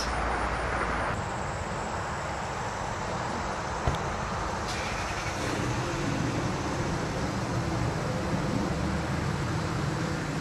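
Steady road traffic noise, with one brief click about four seconds in.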